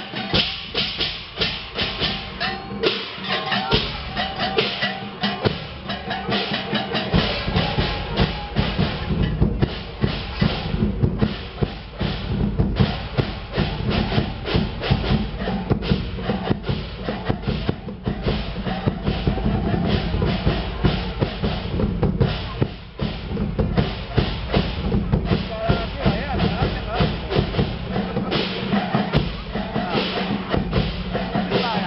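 Temple procession percussion: large bronze hand cymbals clashing in rhythm with drums, over a dense, rapid crackle of sharp strokes typical of firecracker strings going off. A steady deep drum-like rumble joins about seven seconds in.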